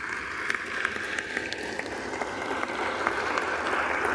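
Applause from House members in the chamber: many hands clapping in a dense, steady patter that grows slightly louder as it goes.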